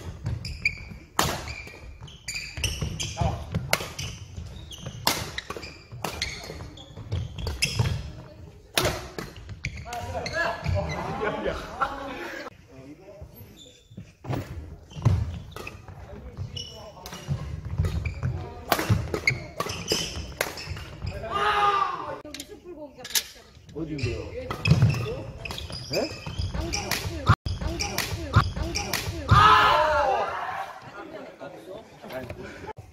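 Badminton rally in a large echoing sports hall: sharp racket strikes on the shuttlecock and footfalls on the wooden court floor, coming irregularly every second or so. Players' voices break in a few times, briefly near the middle and again near the end.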